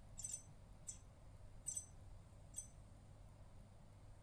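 EMO desktop robot giving four faint, short, high-pitched electronic chirps, spaced under a second apart, after being given a voice command.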